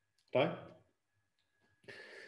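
Speech only: a man says a single word, then near silence, with a faint breathy intake starting just before the end.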